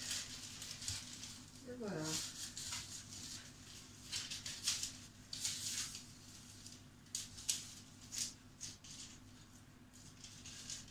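Faint, irregular rustling and scraping as hands pull the trimmed pastry away from the rim of a tart tin: a string of short soft scuffs over a low steady hum.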